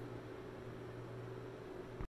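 Faint steady background hiss with a low, steady hum: room tone, with nothing else happening.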